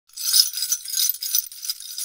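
Jingle bells shaken, a bright metallic jingling that is loudest in the first half second and then continues more softly.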